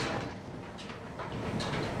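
Belt-driven machinery of a water-powered flour mill running with a steady mechanical noise. It drops in loudness during the first half second, just after its drive belt has been shifted off with a wooden pole to stop it.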